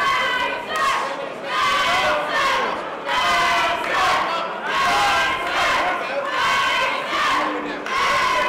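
Fight crowd shouting and yelling, many voices at once, in surges about a second apart.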